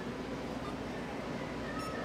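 Steady shop room noise, with one short electronic beep from a card payment terminal near the end as the Bitcoin payment goes through.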